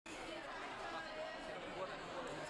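Many people talking at once in a large hall: a steady, indistinct chatter of overlapping voices.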